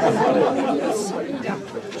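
Theatre audience laughing and chattering, many voices overlapping at once in a hall.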